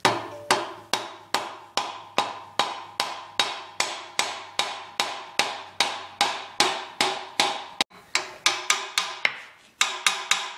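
Hammer blows on a bearing driver, driving a new wheel bearing into a Ford 8.8 rear axle tube: an even run of sharp knocks, about two and a half a second, each with a short metallic ring. Near the end the blows turn lighter and quicker as the bearing seats.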